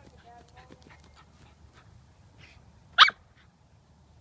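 Faint scratching and rustling of a Cairn terrier digging at a mole hole in grass and soil, then a single short, sharp bark about three seconds in.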